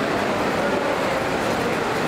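A steady, loud din of background noise with indistinct voices mixed in, no single sound standing out.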